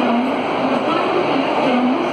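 Indian Railways passenger coaches rolling past close by as the express pulls into the station: a steady rumble of wheels on rail.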